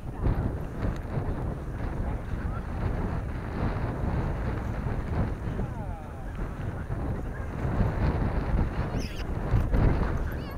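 Wind buffeting the camera microphone with a heavy low rumble, over the thuds of footsteps on sand.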